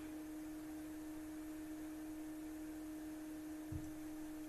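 A faint steady tone held at one pitch, with a weaker tone an octave above it, plus a soft low thump just before the end.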